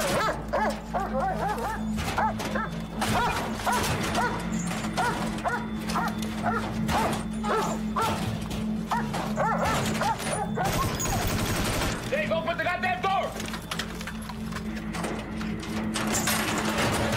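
Film soundtrack: a dog barking and whining in a string of short calls over background music and voices.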